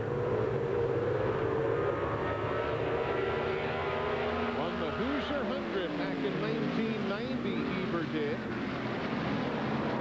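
USAC Silver Crown race cars running at full throttle on the oval, their engines a steady drone. From about the middle several engine notes rise and fall in pitch as cars pass by.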